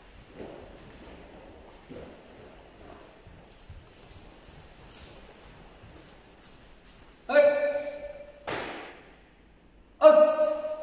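Soft, faint thuds of bare feet stepping on dojo mats, then about seven seconds in a man's loud shout held on one pitch for about a second. A short breathy rush of noise follows.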